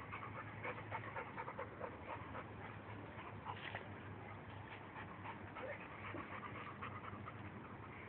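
A Cane Corso panting quietly in short, quick, irregular breaths.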